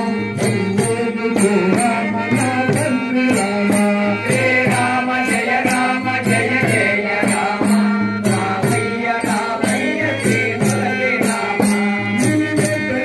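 A group of men singing a devotional Rama bhajan in unison over a steady drone, with small brass hand cymbals (talam) struck in a steady beat of about three strikes a second.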